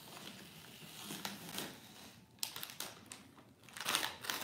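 Cardboard crinkling and scraping as cut pieces are worked loose by hand, with irregular sharp crackles; the loudest comes just before the end.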